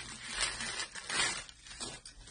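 Plastic bubble wrap rustling and crinkling in a few short swells as a tumbler is pulled out of it.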